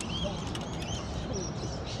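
Birds chirping in short high calls several times, over a steady low outdoor background, with a few sharp clicks near the start.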